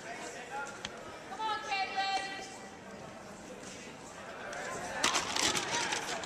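People's voices calling out in a gym, with one long, high call about two seconds in. Louder mixed shouting starts about five seconds in, with a few sharp knocks among it.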